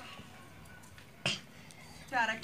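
A single short, sharp click a little over a second in, against a faint background.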